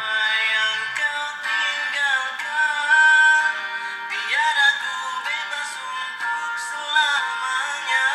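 Malay pop song playing: a sung melody over backing music.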